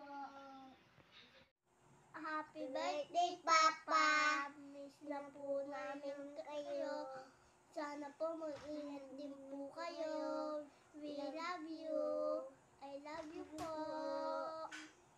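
Young children singing a song, with a short break about a second and a half in before the singing starts again.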